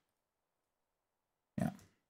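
Near silence, then a man says a brief "yeah" near the end.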